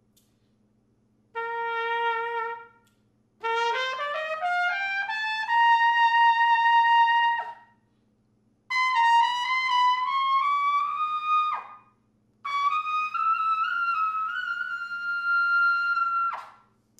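1950 H. N. White King Silvertone B♭ trumpet with a sterling silver bell, played in four phrases that climb into the upper register. First comes a short held note, then a run rising an octave and holding, then two phrases stepping higher still. The last phrase reaches and holds the G above high C.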